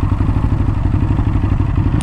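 Ducati Hypermotard 939's L-twin engine running at low revs with a steady, rapid low pulse as the bike rolls slowly to a stop.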